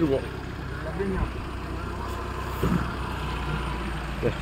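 A vehicle engine idling with a steady low hum, and faint voices of people talking over it.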